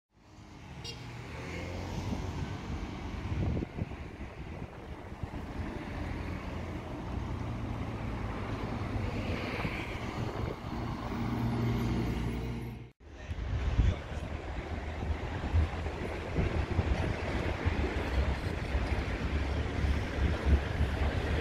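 Road traffic going by: a steady low rumble of passing cars. It breaks off for an instant about two-thirds of the way through, then goes on with uneven low bumps.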